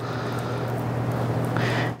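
A steady low hum with an even rushing noise over it, like background machinery or a ventilation fan, holding level throughout.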